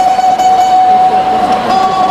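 Rondalla string ensemble of bandurrias and guitars holding one long note, the plucked strings sustained by tremolo picking.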